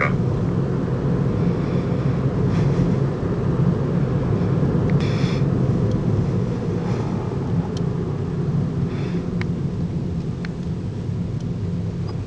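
Car engine and road noise heard from inside the cabin while driving through a rock tunnel: a steady low drone with a few faint, brief sounds over it.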